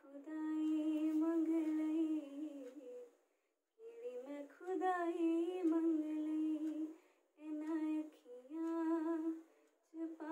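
A woman humming a slow melody unaccompanied, in three phrases with short breaks between them, her notes held and gently wavering.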